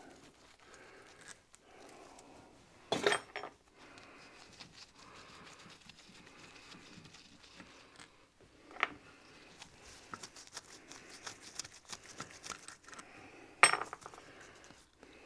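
Small metal clicks and clinks of hand tools and pump parts being handled as a small engine oil pump is taken apart, with sharper knocks about three seconds in, about nine seconds in and near the end, and a run of light ticks shortly before the end.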